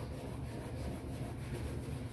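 Faint scrubbing by hand on a stainless-steel sink and drainer, over a steady low hum.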